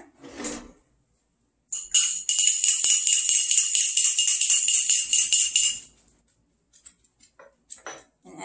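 Oil-and-vinegar dressing being whisked in a small glass jar with a metal utensil: quick, rhythmic clinking of metal against glass, about five strokes a second. It starts about two seconds in and stops about six seconds in.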